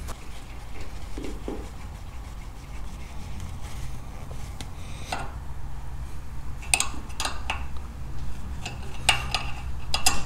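Metal hydraulic hose fitting being threaded back by hand onto a two-post car lift column: a few light metallic clicks and clinks around the middle and more near the end, over a low steady hum.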